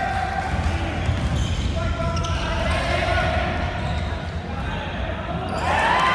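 Basketball being dribbled on a hardwood gym floor during a game, with players' shouts and calls, all echoing in a large hall.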